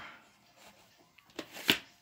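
VHS cassette and its cardboard sleeve being handled: a faint click, a short scrape, then a sharper plastic click about one and a half seconds in.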